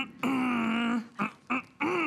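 A woman's voice making one drawn-out vocal sound held at a level pitch for almost a second, followed by a few short vocal sounds.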